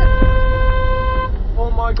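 Car horn sounded in one long steady blast that cuts off a little over a second in, a warning at a car pulling out in front, over low road rumble.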